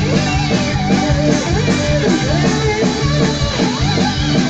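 Live Celtic punk band playing an instrumental passage: electric guitars, bass and drums with a steady beat, and a winding lead melody above them.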